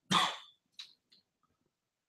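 A man coughs once, a single short cough.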